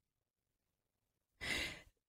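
Dead silence, then about a second and a half in, one short audible breath into a close microphone: a woman drawing breath just before she speaks.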